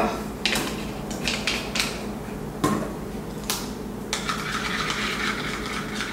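A measuring spoon clinking against a small cup, with several sharp clinks, then a stretch of stirring near the end.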